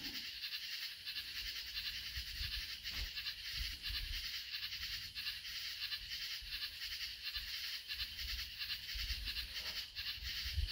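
Background nature-sounds recording: a faint, steady chorus of fine, rapid, high pulsing, with a low rumble underneath.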